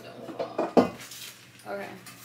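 Pots and pans clattering in a kitchen cabinet as a non-stick pan is pulled out, with a few sharp knocks, the loudest just before a second in.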